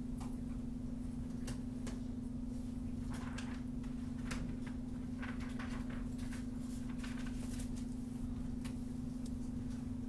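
A steady low electrical hum, with faint scattered ticks and short scratchy strokes through it from hand input at the computer during digital painting.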